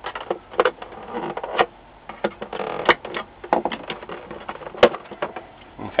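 Plastic catches of an LCD monitor's back cover clicking and snapping loose as a screwdriver pries around the edge, with scrapes and knocks of plastic and the metal-framed panel being handled. The clicks come irregularly, a dozen or so.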